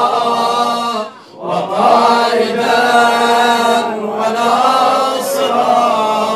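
A group of men chanting a devotional supplication together in unison, in long-held phrases. There is a short break a little over a second in, then one long phrase.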